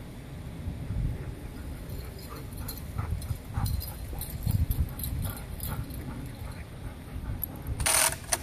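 Wind buffeting the microphone, a low uneven rumble, with faint scattered ticks and rustles from dogs running on grass. A single sharp clack comes just before the end.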